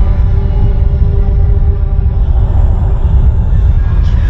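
Ominous film-score music: held notes over a loud, steady low rumble.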